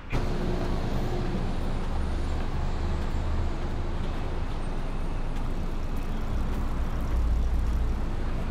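Street traffic noise: a dense, steady rumble of road vehicles that starts abruptly, with the low rumble growing heavier near the end.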